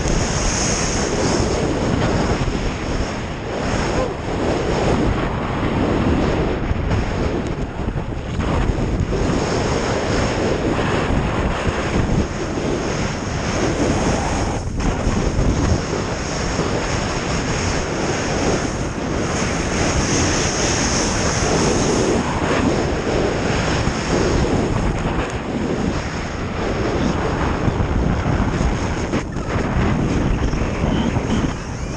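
Steady wind rushing over an action camera's microphone during a fast downhill ski run, mixed with the hiss and scrape of skis running on groomed snow.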